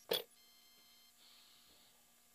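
A single sharp clank of metal against metal, a wrench or socket knocking on engine hardware, followed by a faint ringing that dies away within about a second.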